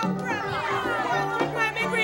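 Young Jamaican ensemble singing a folk song live with accompaniment: several voices together, with pitches sliding up and down about half a second in over a steady low bass line.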